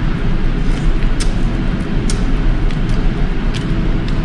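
Loud, steady rumbling background noise, like machinery or an engine running, with a few sharp clicks from eating, about a second in, two seconds in and near the end.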